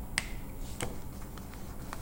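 Two short sharp clicks about half a second apart, then a couple of fainter ticks, from hands handling small hard objects on a table.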